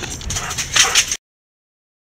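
A woman laughing in breathy, high bursts that grow louder, then cut off abruptly just over a second in.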